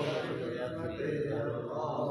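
A group of men chanting Sindhi molood (devotional praise) together, with several voices holding long, gently wavering notes.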